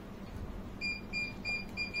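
An electronic beeper sounding four short, high beeps in quick succession, about three a second, starting a little under a second in.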